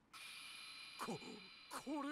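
Faint held high tones from the anime's soundtrack, with a short falling sweep about a second in and a character's voice starting near the end.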